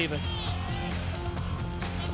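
Background music with sustained low notes, steady in level, under a highlights reel; a commentator's last word is heard at the very start.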